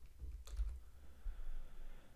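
A few keystrokes on a computer keyboard, the clearest about half a second in, over a low rumble.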